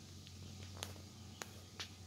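Quiet room tone: a faint steady low hum, with three faint light clicks a little under a second in and twice more in the second half.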